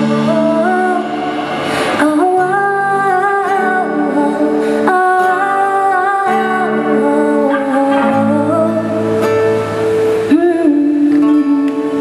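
Live band playing: female and male voices sing long held notes over electric and acoustic guitars, the closing bars of a song.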